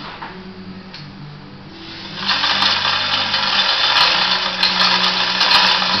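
Hand-operated hoist hauling up a heavy solid steel swing keel: a steady mechanical rattling whir over a low steady hum. It is quieter for the first two seconds and loud from about two seconds in, as the rope takes the load.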